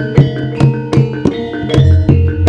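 Javanese campursari music: kendang hand drums keep a quick, even rhythm, some strokes bending in pitch, over gamelan metallophones and gongs ringing steady tones.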